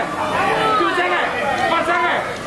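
Several people talking at once in a busy restaurant dining room: overlapping conversation and chatter.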